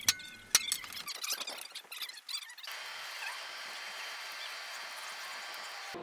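Two sharp metal-on-metal hammer strikes about half a second apart near the start: a hand hammer tapping a center punch into a steel billet, with a short ring after each. A few light ticks follow, and from about halfway a steady hiss.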